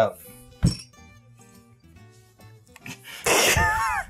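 A single sharp knock about half a second in, then faint background music, and near the end a loud burst of a man's laughter.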